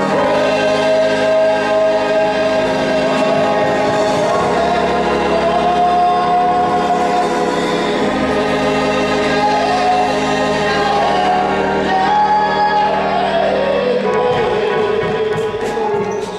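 Church choir singing with organ accompaniment, in long held chords over steady organ bass notes. Near the end the melody falls and holds on a closing note.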